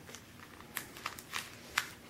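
Faint handling sounds of a smartphone being pulled out of its plastic box tray: a few small clicks and light crinkles of plastic film, the sharpest click near the end.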